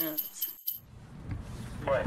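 Faint jingling of small bells that stops about half a second in, followed by a brief dropout to silence and a low background rumble.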